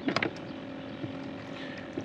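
Small boat being rowed: a few short knocks from the oars working in their oarlocks at the start and one more about a second in, over a steady low hum.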